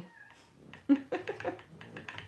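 A pet cat meowing loudly, a quick run of short meows starting about a second in.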